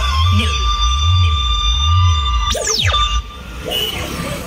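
Loud electronic dance music played through a procession truck's stacked loudspeakers: a heavy bass beat about once a second under held synth tones. About two and a half seconds in comes a swooping sound effect, and the beat drops out near the end.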